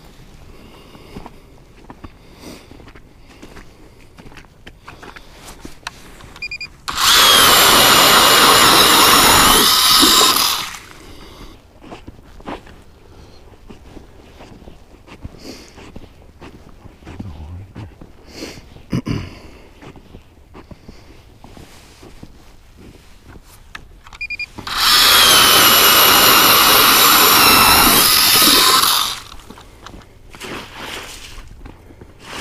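Electric power ice auger boring through lake ice in two runs of about three to four seconds each, the first a quarter of the way in and the second near the end, its motor whining steadily and then cutting off. Between the runs come quieter scattered knocks and crunches.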